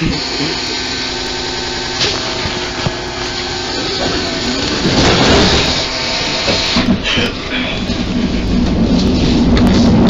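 Electric tram in motion heard from inside the car: a steady whine from the electric drive, then a wider rolling and rumbling noise that swells after about four seconds and grows louder toward the end.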